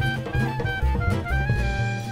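Gypsy jazz band playing, with a clarinet lead over acoustic guitar, upright bass and drum kit. The clarinet runs through short stepped notes, then holds a longer note in the second half.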